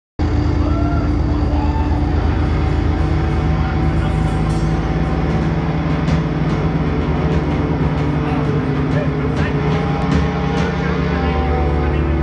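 Amplified electric guitars and bass holding a loud, steady drone through stage amps, with a murmur of crowd voices underneath.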